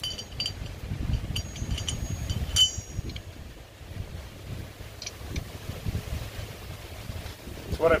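A few light metallic clinks, ringing briefly, in the first three seconds as an aluminum wheel spacer with steel studs is handled, with fainter ticks about five seconds in, over a low rumble of wind on the microphone.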